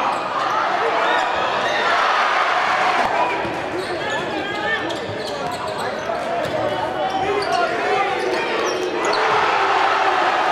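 A basketball dribbled on a hardwood gym floor, with short high sneaker squeaks and crowd chatter in a large echoing gym.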